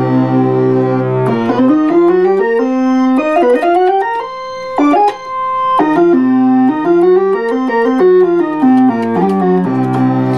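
A monophonic Moog analog synthesizer played one note at a time from the Moog Source keyboard: a low held note, then a run of notes stepping up the keyboard and back down to the low end. This is a pitch-tracking test over the control-voltage connection, and the low end is out of tune.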